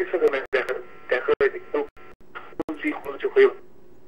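A person talking over a telephone line, the voice thin and cut off in the highs, in a continuous run of short phrases.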